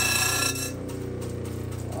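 Lapidary cabbing machine running, its motor humming steadily, while a fossil shark coprolite is ground against a water-cooled wheel with a high whine. The whine stops abruptly a little under a second in, as the stone snaps in half on the wheel.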